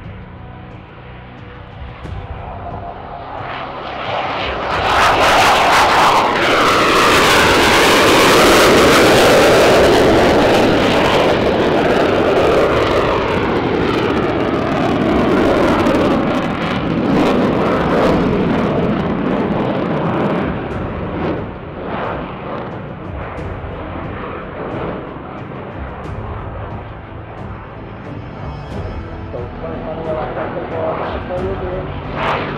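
Spanish Air Force F/A-18 Hornet's twin General Electric F404 turbofans at takeoff power as the jet lifts off and climbs into a loop. The jet noise builds about four seconds in and is loudest for several seconds with a sweeping, wavering pitch as the jet passes. It then slowly fades as the jet climbs away.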